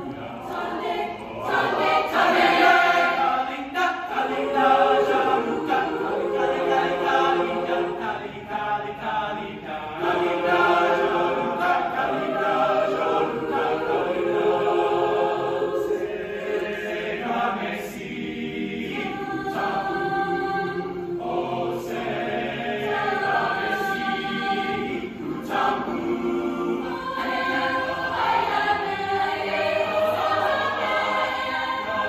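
A large mixed choir singing in parts, holding and shifting chords continuously, heard from the audience in a reverberant auditorium.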